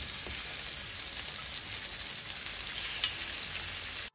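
Chicken kebab patties shallow-frying in hot oil in a pan: a steady sizzle with small crackles, as fresh raw patties are laid into the oil.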